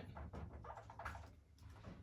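Dry-erase marker squeaking on a whiteboard in several short strokes as a word is written, over a low steady hum.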